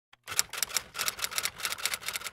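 Typewriter keystroke sound effect: a rapid, even run of key clacks, about seven or eight a second, starting a moment in.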